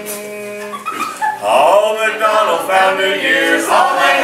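A small mixed group singing a cappella in a mock-tenor style: a quieter held chord at first, then louder singing with wide, wobbling vibrato from about a second and a half in.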